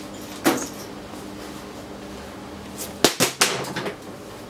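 Stacked microwave-oven transformers humming steadily as they drive a failing plasma panel with high voltage, with sharp electrical arc snaps: one about half a second in, then a quick cluster of four or five near the end.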